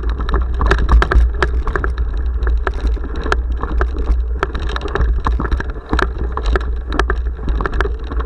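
Mountain bike rattling over a rough dirt trail, heard through a handlebar-mounted action camera: a constant low rumble with many sharp, irregular clicks and knocks from the bike and camera shaking.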